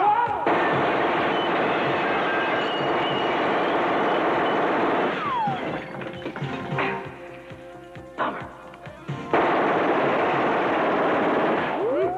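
Sustained automatic gunfire in a film soundtrack, in two long bursts: from about half a second in to about five seconds, then again from about nine seconds. Between them it is quieter, with scattered shots and impacts.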